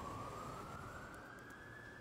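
Emergency-vehicle siren wailing faintly, one slow rise in pitch that levels off near the end, over a low street hum.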